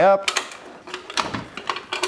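Steel ammo-can-style lid and latch of an Ignik FireCan propane fire pit being unclipped and opened by hand: several separate clicks and small metal knocks.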